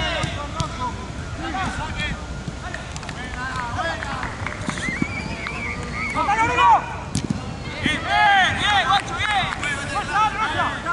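Football players shouting and calling to each other on the pitch, with the loudest shouts near the end.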